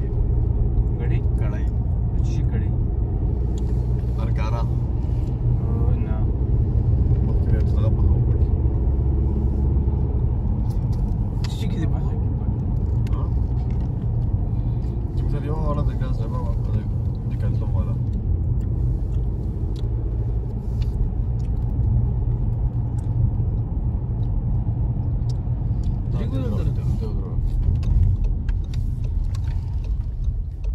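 Car cabin noise while driving: a steady low rumble of engine and road, with quiet talking now and then.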